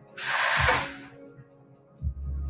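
Espresso machine's steam wand purged in one short blast of steam hiss that fades out within about a second.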